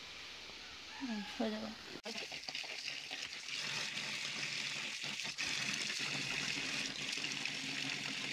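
Tap water pouring in a stream into a plastic basin of mustard seeds while the seeds are stirred by hand to wash them. The steady splashing hiss starts about two seconds in.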